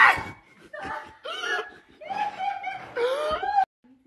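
A person laughing and snickering in a few short spurts, cut off abruptly shortly before the end.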